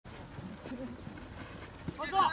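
Faint shouts and calls of players on a football pitch during play, with a few soft knocks, the clearest just before the end.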